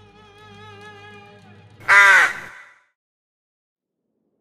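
A single loud crow caw about two seconds in, cutting in just as sustained music fades out.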